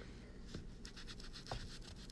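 Faint scratching of a foam ink-blending tool rubbing ink onto a paper strip, with a small tap about one and a half seconds in.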